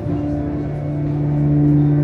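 Electronic synthesizer drone: a low bass note comes in at the start under a held higher note and fainter upper tones, swelling slightly in loudness.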